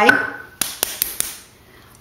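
Four quick, sharp clicks and taps in a small room, a little over half a second in, from small hard makeup items being handled.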